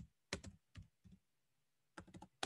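Faint keystrokes on a computer keyboard: about five key clicks in the first second or so, then they stop.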